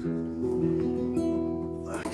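Nylon-string classical guitar strings ringing on, with a few sustained notes that change pitch a couple of times.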